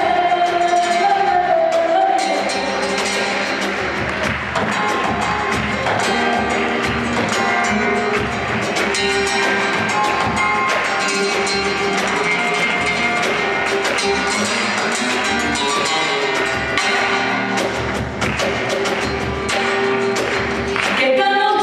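Live band music: a song played with a beat, with a singer's voice heard at the start.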